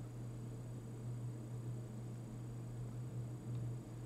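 Steady low hum with faint hiss, the background noise of a call or recording setup with no other sound.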